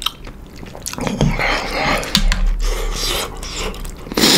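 A person chewing a mouthful of kimchi noodles with wet, open-mouthed eating sounds. A few light clicks come from a ceramic spoon against the soup bowl, the clearest about two seconds in.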